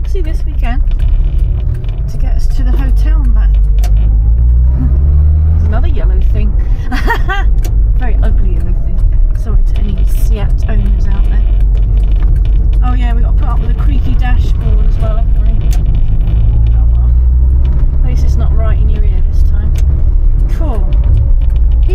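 Austin Allegro 1500 Estate's four-cylinder engine heard from inside the car as it drives, a constant low rumble whose pitch rises as it accelerates, once about four seconds in and again near sixteen seconds.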